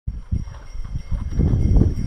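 Wind buffeting the camera's microphone: an irregular low rumble with uneven thumps.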